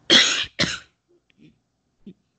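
A person coughing twice in quick succession, the first cough louder and longer than the second.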